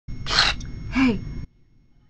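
A woman's breathy gasp, then a short voiced exclamation that falls in pitch; the sound cuts off suddenly about a second and a half in.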